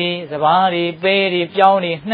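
A Buddhist monk's voice chanting on a nearly level pitch, in phrases broken by short pauses.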